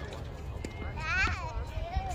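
A person's high, wavering vocal cry that rises and falls once, about a second in, over a steady rumble of wind on the microphone.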